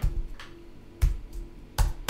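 Computer keyboard keystrokes: about five separate sharp clacks with a dull thump, spaced irregularly, as text is deleted and a new line is typed in an editor.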